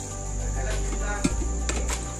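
Crickets trilling steadily and high-pitched, over background music with a low bass line. A few light knocks come about a second in and near the end.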